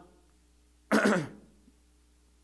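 A man clearing his throat once, close to a microphone, about a second in, in a short pause between spoken phrases.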